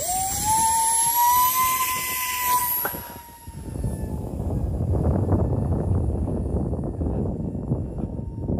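Electric motor and propeller of a 3D-printed RC Beechcraft Starship model whining at full throttle on the hand launch. The pitch rises in the first second, holds steady, then fades about four seconds in as the plane flies away, leaving a low rushing noise.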